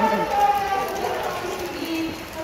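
Speech: a person talking, most likely the show presenter over the arena's sound system.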